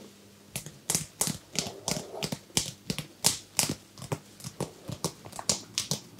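Hands massaging a man's head and scalp: fingers rubbing and tapping on skin and hair in a quick, irregular run of crisp taps, about three a second, starting about half a second in.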